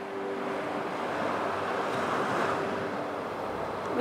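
Sea surf washing in with wind, the rush swelling to its loudest about halfway through.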